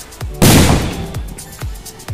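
A Diwali firecracker explodes once about half a second in with a sharp, loud bang that fades over a fraction of a second. Background music with a steady beat plays throughout.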